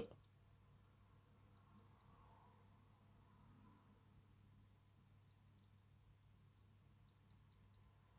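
Near silence with a few faint ticks, a handful about two seconds in and again near the end, from the button of a LEGO Light and Sound siren brick being pressed. No siren or sound plays, because the brick's battery has been knocked out of place in transit.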